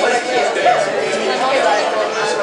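Overlapping chatter of several people talking in a room, with no instruments playing.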